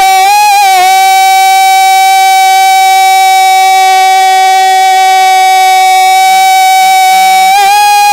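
A man singing a naat, holding one long note at a steady pitch for about seven seconds, with a slight waver as it begins and again as it ends.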